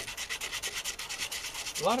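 Hand sanding of the rusty sheet-metal step of a 1990 Ford Econoline van, in rapid, even back-and-forth strokes; a man's voice starts just before the end.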